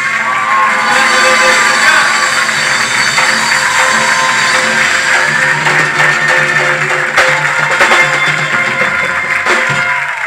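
Loud live music: acoustic guitars playing an instrumental passage with percussion beneath them.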